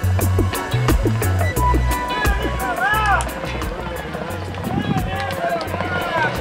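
Upbeat music with a steady beat and a deep bass line, with a voice over it from about two seconds in.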